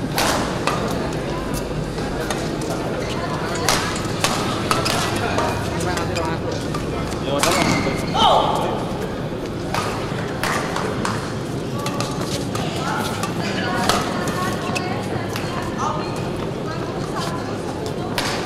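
Badminton play in a large indoor hall: irregular sharp racket strikes on the shuttlecock and shoe squeaks on the court, over a constant murmur of voices from around the hall. A louder voice rises briefly about eight seconds in.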